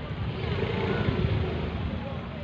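Outdoor background noise: a steady low rumble with faint, distant voices.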